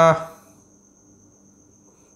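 A man's word trails off just after the start, then a quiet pause holding only a faint, steady high-pitched whine and a low hum.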